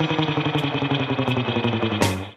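Instrumental background music with a quick, even pulse.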